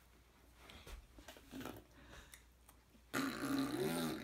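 A voice making a drawn-out, wavering wordless sound that starts suddenly about three seconds in, after a few seconds of faint movement noises.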